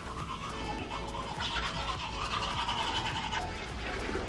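Manual toothbrushes scrubbing teeth, with background music.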